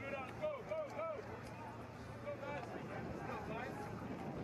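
Distant voices shouting and calling out on an open sports ground over steady background noise, with a run of short calls in the first second or so.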